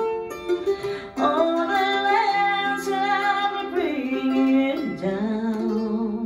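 Amplified mandolin, tuned a whole step below standard, playing the closing bars of a slow ballad, with a woman singing sustained, gliding notes over it. It ends on a held chord that rings out near the end.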